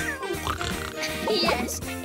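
A cartoon pig character oinking in a few short calls that slide up and down in pitch, over background music.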